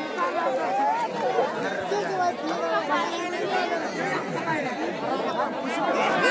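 A large crowd of spectators chattering, many voices talking over one another at a steady level.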